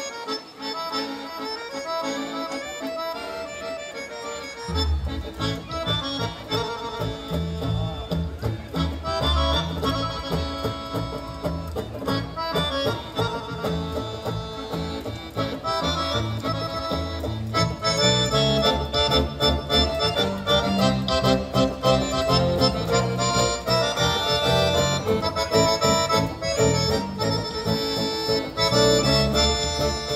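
Live instrumental folk music: a piano accordion carries the melody over a nylon-string acoustic guitar. An electric bass guitar line comes in about five seconds in, and the playing grows louder in the second half.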